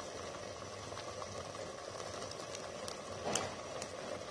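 Thick prawn masala simmering in a clay pot: a steady low bubbling with a few faint pops, the clearest a little after three seconds in.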